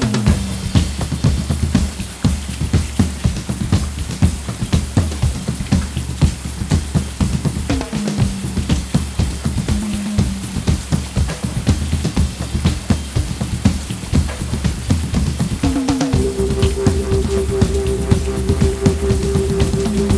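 Instrumental passage of a live indie synth-pop band: a steady drum-kit beat with electric bass and synthesizer. A sustained higher synth note comes in about four seconds before the end.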